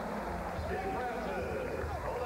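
A man's voice over steady arena crowd noise from a televised basketball broadcast.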